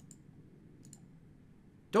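A few faint short clicks in a pause: one just after the start and a couple close together a little before one second in, over quiet room tone.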